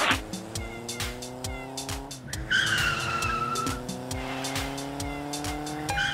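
Video-game car engine sound effect accelerating, its pitch climbing steadily and dropping back twice, with a tire squeal lasting about a second near the middle. Background music with a steady beat plays throughout.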